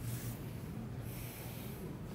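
A person breathing out twice through the nose near the microphone: two short hissy breaths, the second about a second in, over a low steady hum.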